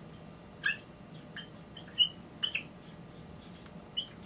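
Dry-erase marker squeaking against a whiteboard while drawing: a string of short, high squeaks, the loudest about two seconds in.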